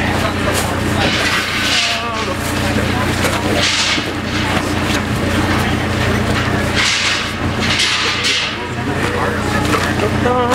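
Clothing and plastic bags rustling and crinkling as they are hurriedly stuffed into a duffel bag, in four short bursts, over a steady low hum and faint voices.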